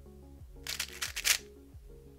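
GAN 356 Air SM 3x3 speedcube being turned fast through a Ub-perm algorithm of M and U moves: a quick run of plastic clicks and clacks lasting under a second, starting about half a second in, over steady background music.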